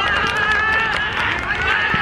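Several young voices shouting at once on a football pitch, long high overlapping yells, with a dull knock near the end.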